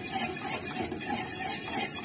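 A spoon stirring and scraping around a stainless steel pot in quick repeated strokes, as pieces of leftover bar soap melt in warm milk.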